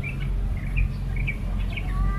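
Diesel engine of a Sumitomo SH210 amphibious excavator running with a steady low drone, while small birds give several short, high chirps over it.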